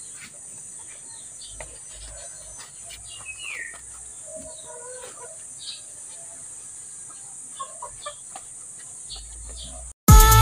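Chickens clucking now and then in the background, with one falling call about three and a half seconds in, over a steady high-pitched hiss.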